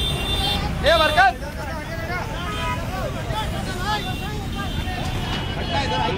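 Several people talking at once in the open, over a steady low rumble of engine or traffic noise. One voice rises louder for a moment about a second in.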